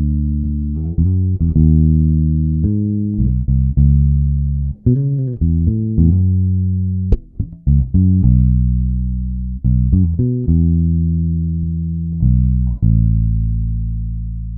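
Solo electric bass guitar playing a slow passing-note line in A major: low notes held for a second or two each, linked by a few short slides and quick runs, with one sharp string click about halfway through.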